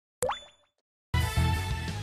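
Intro sound effect: a short pop with a quick upward-gliding tone about a fifth of a second in, fading within half a second. After a brief silence, music starts about a second in.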